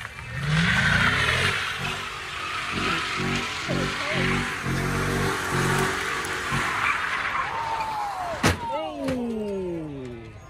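Dodge Charger doing donuts: the engine revs up and its tires screech continuously, with the engine note pulsing under the squeal. Near the end there is a single sharp knock, and then the engine note falls away as the revs drop.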